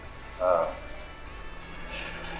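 A man's short wordless vocal sound, a brief hum or murmur, about half a second in, over a low steady hum.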